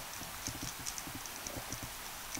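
Underwater sound on a rocky reef: a steady hiss with scattered, irregular faint clicks and crackles.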